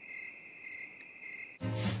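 Cartoon-style cricket chirping sound effect: a steady high trill with a pulsing overtone about twice a second, cutting off abruptly near the end. It is the stock 'waiting in silence' cue, here for honey that is slow to pour.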